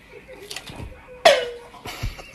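A Pringles can strikes a person's head with a single loud hollow hit that rings with a tone falling quickly in pitch and then holding, like an electronic drum. Laughter starts right at the end.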